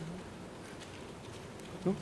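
Steady hiss and low buzz of a courtroom microphone feed, with a short vocal sound just before the end.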